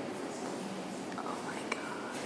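Hushed voices of people whispering and talking quietly, with a single faint click near the end.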